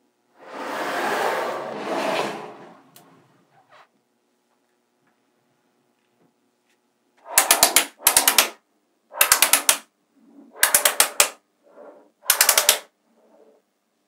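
Small neodymium magnetic balls snapping together: five short bursts of rapid, loud clicking about a second apart as blocks of balls are pushed into long bars. Before them, a softer scraping rustle as the ball-built structure is handled.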